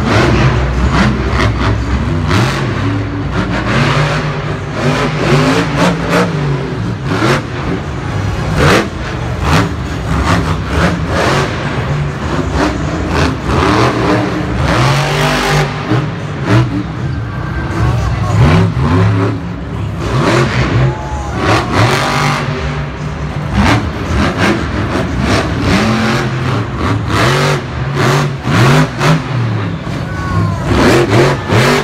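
Monster truck's supercharged V8 revving hard in repeated rising and falling bursts as it drives and jumps over dirt ramps, echoing across a stadium.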